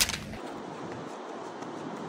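A sharp crack right at the start, then a steady hiss of wind and small waves on a sandy beach.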